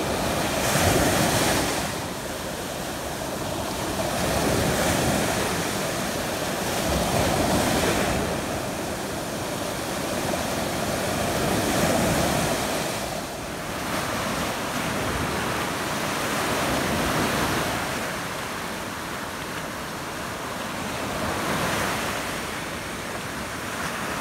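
Ocean surf: waves breaking and washing onto the beach, a steady rush that swells and eases every few seconds.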